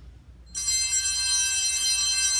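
Altar bell struck once at the elevation of the chalice, about half a second in, its high tones ringing on and slowly fading.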